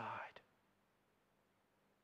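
A man's speech trailing off in a breathy sound in the first half-second, then near silence: room tone.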